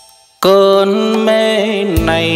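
Live band music at a join between songs in a bolero medley: the previous song cuts off at the start, a brief gap follows, then about half a second in a new song's intro comes in with a held chord of sustained tones that shifts pitch slightly near the end.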